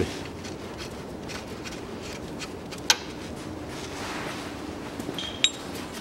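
Light handling noises from work in an engine bay: one sharp metallic click about halfway through, then a few small clicks near the end, two of them with a brief ringing clink like a steel tool or part touching metal. Under them is a steady low background noise.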